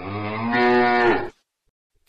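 A cow mooing: one long moo of just over a second that then stops.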